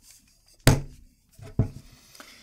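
Two hard thunks of a Springfield Armory Saint Victor .308 AR pistol being set down on a wooden tabletop, about a second apart, the first the louder, with faint handling rustle between.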